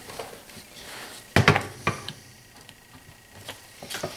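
Workshop handling noises from a lawnmower transmission case being worked with a rag on a wooden bench: a sharp knock about a second and a half in, a smaller one half a second later, and a few light taps near the end.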